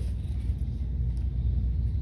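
A pause in the talk filled by a steady low rumble of room background noise.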